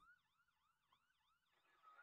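Near silence, with a very faint siren in the background: a rapid yelp that sweeps up and down about four times a second and fades out near the end.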